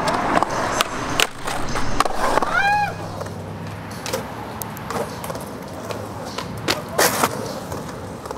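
Skateboard wheels rolling on a concrete bowl, with scattered clicks and knocks from the board and trucks. A short voice call rises and falls about three seconds in, and a brief loud noise comes about seven seconds in.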